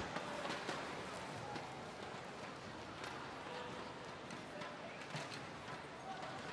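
Quiet sports-arena ambience: a steady low haze of crowd noise with faint distant voices and a few light knocks.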